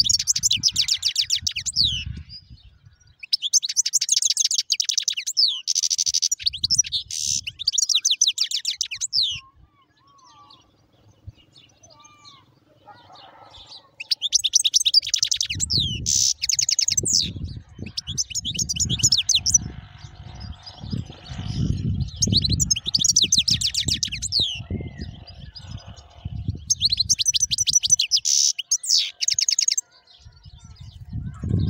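Caged finch singing in long runs of rapid, twittering trills, with a lull of several seconds in the middle. A low rumble runs under the song through the second half.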